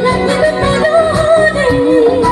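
A woman singing a song with a live band, holding long, wavering notes that step down in pitch partway through, over keyboard, guitar and drums.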